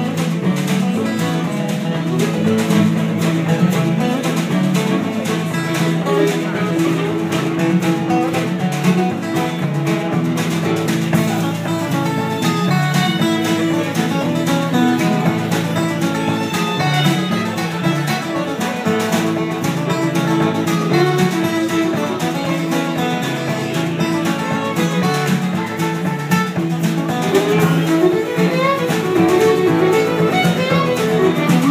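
Live acoustic string band playing: strummed acoustic guitars with fiddle and a drum kit keeping time.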